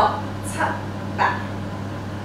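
A woman counting dance beats aloud in short, clipped calls, three of them spread over the two seconds, over a steady low hum.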